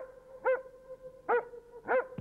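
A dog barking four times in short, sharp barks, unevenly spaced.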